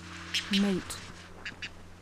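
Barau's petrels (taille-vent) calling: a run of short, sharp, quick notes, with a steady low hum underneath.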